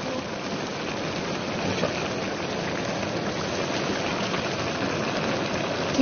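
Chicken and mushroom stew with glass noodles bubbling steadily in a wok, a continuous simmering hiss with bubbles popping.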